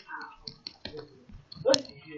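A few sharp computer mouse clicks, with faint, brief bits of voice in between.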